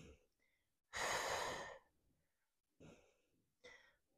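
A woman's single long, breathy exhale under exertion, about a second in, while holding a raised-leg pulse; two faint short breaths follow near the end.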